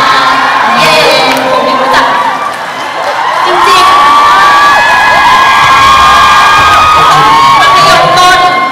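Audience of fans screaming and cheering at a concert, many overlapping high shrieks, swelling louder about halfway through.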